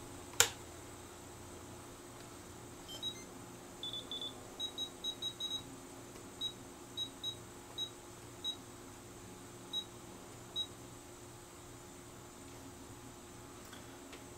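Futaba T8FG radio transmitter beeping with each key press while its menu is navigated to reverse the throttle channel: short high beeps, a quick run of them around four to five seconds in, then single beeps about a second apart that stop about two-thirds of the way through. A sharp click just after the start.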